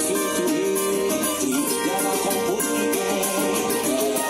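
Cavaquinho strummed in steady rhythm along with a recording of the song, which carries a gliding sung melody over string accompaniment and brisk percussion.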